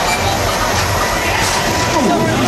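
Loud, steady rumbling din of a robotics competition field: the robots' drive motors and wheels running across the floor, mixed with crowd noise.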